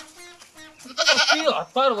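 Goat bleating: a long, quavering bleat starting about a second in.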